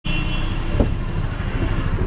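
Steady low rumble of road traffic and motor vehicles coming in through an open car door, with one short knock a little under a second in.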